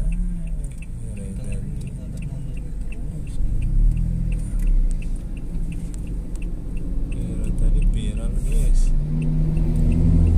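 Diesel engine of a Hino 500-series truck pulling a heavy excavator load up a steep grade, a steady low drone that grows much louder in the last second as it comes close. A faint regular ticking, about two or three a second, runs through it.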